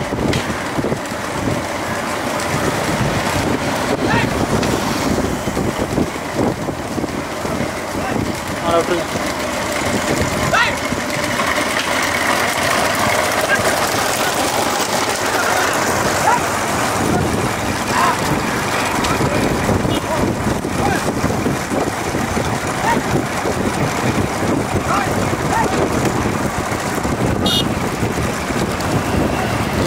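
Several motorcycle engines running together with people's voices calling out, and wind buffeting the microphone; a steady, dense din.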